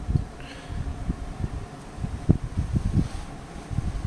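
Handling noise on a handheld camera's microphone as it is moved: a low rumble with soft irregular bumps, over a faint steady room hum.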